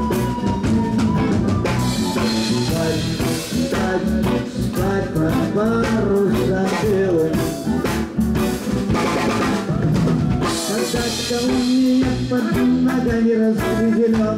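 Live band playing an instrumental passage: drum kit keeping a steady beat under guitars, with saxophone and a brass horn carrying the melody.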